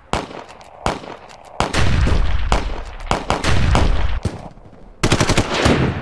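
Gunfire sound effects: several single heavy shots with long, rumbling, echoing tails, then a rapid machine-gun burst near the end.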